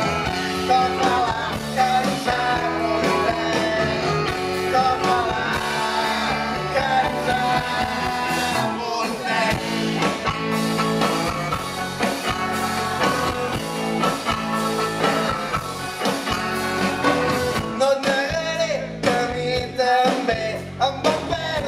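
Live rock and roll band playing through a stage sound system: electric guitars and drums, with a lead vocal singing over them.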